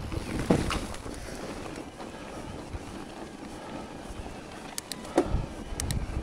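Electric mountain bike ridden over a rocky trail: steady wind and tyre noise, with knocks and rattles from the bike hitting bumps, sharpest about half a second in and again about five seconds in, followed by a few quick clicks.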